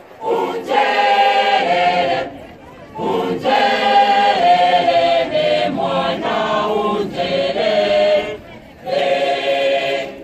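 Church choir singing unaccompanied in three phrases, each broken off by a short pause.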